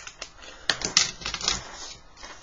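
A quick cluster of light clicks and taps as a pencil is set down among plastic set squares on a drawing board.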